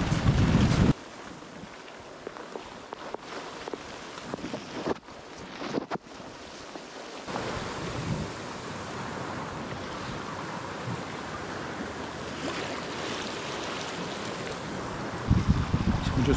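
Water rushing and splashing along the hull of a sailing yacht under sail, with wind noise on the microphone. A loud wind rumble fills the first second; the water hiss grows louder and steadier about seven seconds in.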